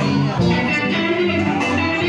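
Live blues band playing, with guitar to the fore over bass and drums, heard from among the audience in the room.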